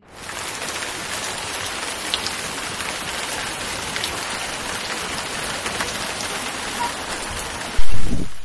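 Small rock waterfalls splashing into a garden pool: a steady rushing and splashing of falling water. A loud low thump near the end.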